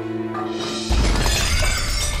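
Objects smashing and glass shattering, a sudden loud crash about a second in, over background music.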